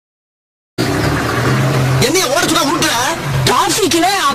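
Car engine running, heard from inside the car, cutting in suddenly after a moment of silence; a man's voice talks loudly over it from about two seconds in.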